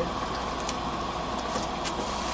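A stainless pot of seaweed soup at a rolling boil: a steady bubbling hiss with a few faint ticks.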